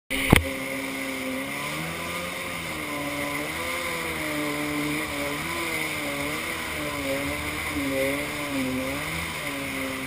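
Kawasaki X2 stand-up jet ski's two-stroke engine running underway, its pitch rising and falling with the throttle, over a steady hiss of wind and water spray. A sharp click right at the start.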